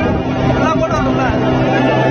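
A motorboat engine running steadily at speed, with a constant drone. People's voices call out over it for a moment about halfway through.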